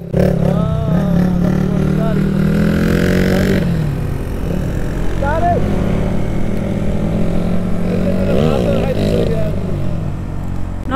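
Single-cylinder engine of a KTM Duke motorcycle running at low road speed, its pitch climbing over the first few seconds and then dropping back to a steady run.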